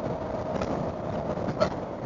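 Suzuki V-Strom 1000's V-twin engine running steadily at cruising speed on the open road, under a steady rush of wind and road noise.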